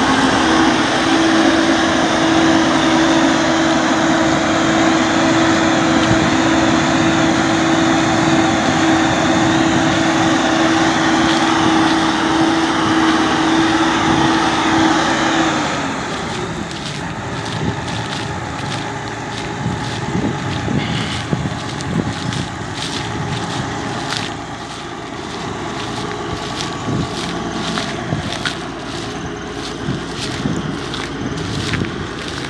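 Claas Lexion 460 combine harvester running, with a loud steady whine over its engine noise. About halfway through, the whine slides down and stops, and the machine's sound turns lower and quieter, with scattered clicks.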